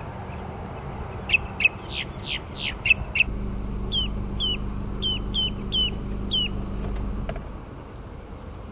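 Male boat-tailed grackle calling: a run of about seven loud, harsh, rasping notes, then about seven shorter notes that each drop sharply in pitch. A low steady hum sits under the second half and stops shortly before the end.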